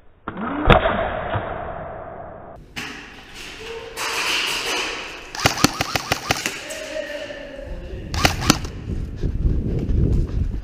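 Airsoft rifle firing a rapid burst of about a dozen shots, then a few more single shots a couple of seconds later. A muffled thump comes near the start.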